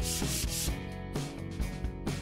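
Sandpaper rubbed back and forth over the cut edge of a denim sleeve: scratchy strokes about four a second that fade out a little under a second in.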